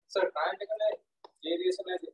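Speech: a person talking in short phrases with brief silent gaps between them.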